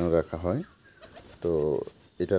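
A man's voice: a short bit of speech, a pause, then a drawn-out hum-like sound, as in a hesitation, near the end.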